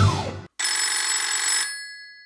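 A telephone ringing with an old-style bell ring: one ring of about a second, which then dies away. Background music cuts off just before it.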